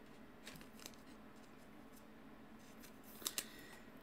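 Faint handling of a trading card and a clear plastic card sleeve: light rustles and clicks, with two sharper clicks about three seconds in.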